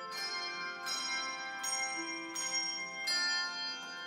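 A handbell ensemble ringing a slow melody, with a new chord struck about every second and left to ring on, and a flute playing along.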